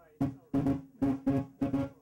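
Drum kit kicking in with a rapid, uneven run of snare and bass drum hits, starting about a fifth of a second in, each hit carrying a ringing pitched tone.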